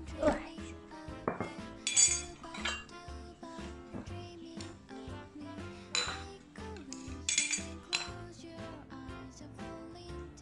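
Stainless-steel bowl and metal spoons clinking as tableware is set down on a table, a few sharp clinks, the loudest about two seconds in and again around six and seven seconds, over background music.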